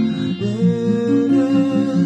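Congregational worship song: a voice sings a slow melody in long held notes over acoustic guitar.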